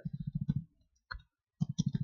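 Computer keyboard typing: two quick runs of rapid key clicks, mostly the same key struck over and over. The second run starts about a second and a half in.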